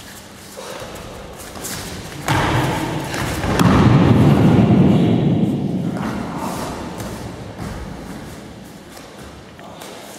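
A person thrown down onto a padded gym mat: a sudden thud a little over two seconds in, then a few seconds of heavy scuffling and rustling of bodies and cotton uniforms on the mat as the partner is held down, fading toward the end.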